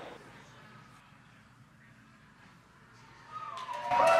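A faint hush, then a crowd bursting into cheering and applause near the end, rising quickly to loud, as the booster touches down.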